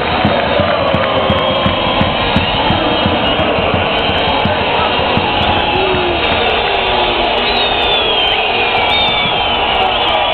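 Large basketball crowd chanting and cheering in an arena, a dense continuous wall of voices, with irregular beats in the first half.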